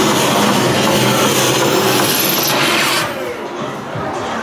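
Loud, dense sound effects of a haunted-house maze's soundtrack, cutting back sharply about three seconds in to a quieter background.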